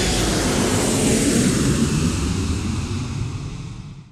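A long rushing whoosh with a low rumble, like a jet passing, used as an end-card sound effect; it fades out over the last second.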